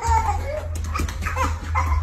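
Golden retriever vocalizing in play, a run of short calls that bend up and down in pitch, over a steady low hum.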